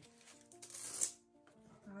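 A short rustle from a baseball cap being handled, loudest about a second in, over soft steady background music.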